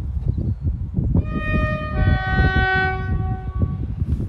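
A train horn sounds a two-note blast. A higher note starts about a second in, a lower note joins it a second later, and both are held together until they stop just before the end. A low rumble runs underneath throughout.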